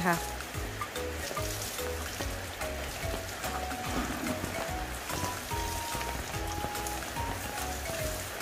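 Background music with a regular bass beat and short melody notes, over the steady hiss of water spraying from a garden hose onto a baby elephant.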